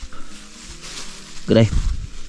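Quiet background with only faint sound, then a man starts speaking near the end.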